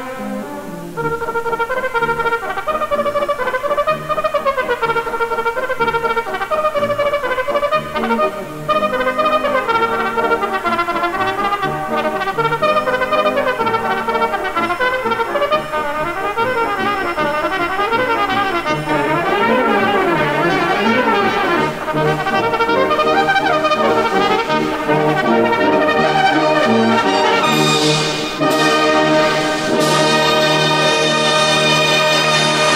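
Brass band playing, with a solo cornet running quickly up and down over the band's accompaniment, as in an air-and-variations cornet solo.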